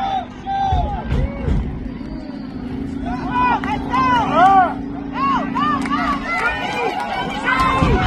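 Spectators at a soccer game shouting and yelling as an attack goes forward, many voices overlapping in rising and falling calls that build louder toward the end as the shot goes in. A steady low hum runs underneath until about six seconds in.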